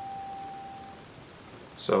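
Yamaha digital piano holding a single high note, the last of a melody line, which fades away about a second in.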